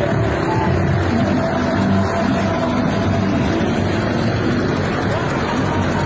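Engines and road noise of jeepneys and cars moving slowly in a motorcade, with faint music mixed in.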